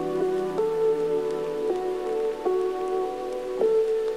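Background music of soft, sustained chords that change every second or so, with faint light ticks over them.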